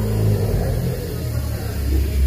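A steady low machine hum, with faint handling noise over it.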